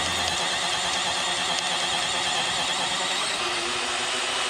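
Power drill running steadily, boring a 7/8-inch auger bit through a wooden fence post.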